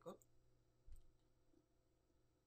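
A single faint computer mouse click about a second in, over near silence.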